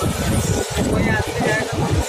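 Passenger train coach rumbling along at slow speed, heard from the open doorway with gusty wind noise on the phone microphone. Voices are audible in the background.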